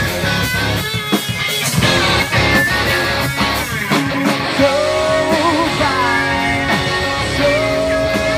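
Live rock band playing an instrumental passage on electric guitars, bass and drums. From about five seconds in, a lead guitar line holds notes that bend and waver in pitch.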